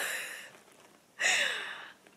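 A woman's breathy sounds: a short breathy laugh at the start, then about a second later a longer breath with a slight falling pitch, like a sigh.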